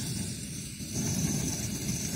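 Coleman 533 dual-fuel camping stove burner running on full, a steady rushing hiss of the pressurised flame.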